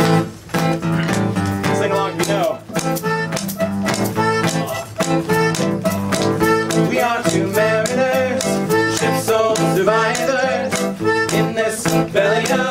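Acoustic guitar strumming a steady rhythm while a small button accordion plays the melody: the instrumental opening of a folk song.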